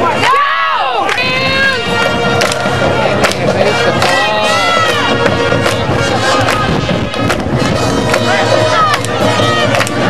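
Stadium band music: drums striking a steady beat with held horn notes, over crowd noise from the stands.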